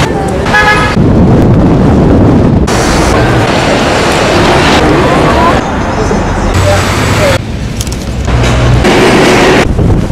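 City sounds in quick cuts that change abruptly every second or two: street traffic with a short car-horn toot about half a second in, then loud outdoor noise with voices.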